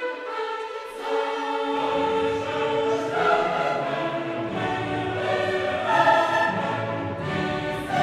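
Choral music: a choir singing long held notes over instrumental accompaniment, with a deep low part coming in about two seconds in.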